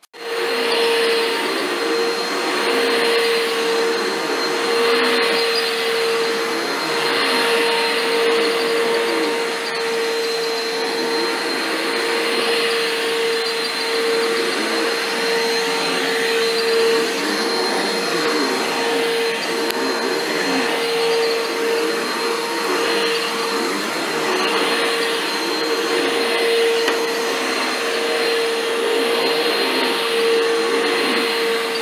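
Upright vacuum cleaner running steadily as it is pushed over carpet, a constant motor sound with a steady mid-pitched hum and a faint high whine.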